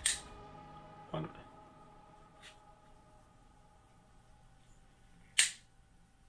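Side cutters snipping through thick silicone-insulated battery lead wires: two sharp snips, one at the start and one near the end, with a softer knock about a second in.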